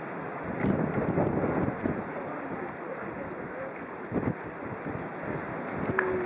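Wind buffeting the camera's microphone in uneven gusts, strongest between about half a second and two seconds in.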